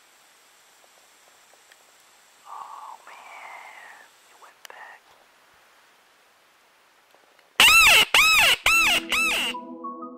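Predator call sounding near the end: four loud wailing cries in quick succession, each rising and then falling in pitch, imitating a prey animal in distress to lure coyotes or black bears.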